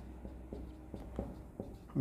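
Marker pen writing on a whiteboard: a string of faint, short scratches and ticks from the pen strokes.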